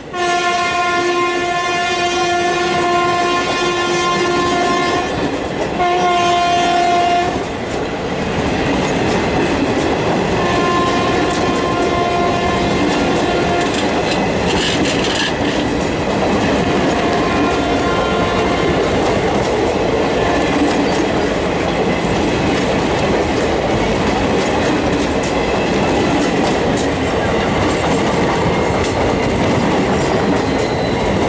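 Passenger coaches of an express train passing at speed, the wheels clattering over rail joints in a steady rush of rolling noise. A train horn sounds one long blast for the first several seconds, broken briefly about five seconds in, then fainter, shorter honks later.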